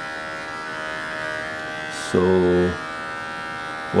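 Steady electric buzz from a small motor, even in pitch and level throughout.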